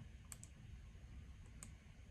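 Near silence with a few faint computer mouse clicks: a quick pair about a third of a second in and one more a little past halfway through.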